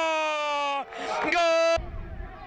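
A football commentator's long drawn-out goal shout of "gol", held on one note that sinks slowly in pitch and breaks off a little before a second in. It is followed by a second, shorter held shout that cuts off abruptly near the end.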